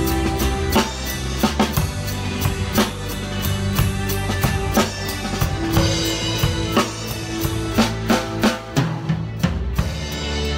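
Drum kit played along to a backing track: kick, snare and cymbal hits over an instrumental part of a pop song, with a quick run of hits near the end.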